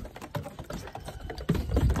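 Lambs' hooves clattering on wooden deck boards: a run of quick, light taps.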